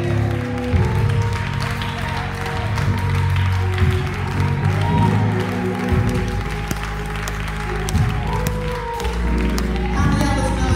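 A church keyboard holds sustained chords over a deep bass while the congregation applauds and claps, with scattered voices calling out.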